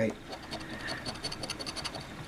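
A round, casino-chip-style scratching token scraping the latex coating off a scratch-off lottery ticket in rapid short strokes, a fast run of light rasping ticks.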